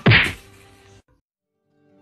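A single sharp whack at the start, dying away quickly. The sound then cuts off to dead silence about a second in.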